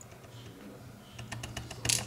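A quick run of small, light clicks of metal tweezers and tiny lock pins being handled over a plastic pinning tray while a padlock cylinder is taken apart. The clicks start about a second in and are loudest just before the end.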